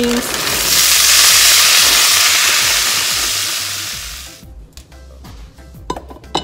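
Frozen green beans hitting hot bacon fat and onions in a saucepan, setting off a loud sizzle that builds within the first second and dies down after about four seconds.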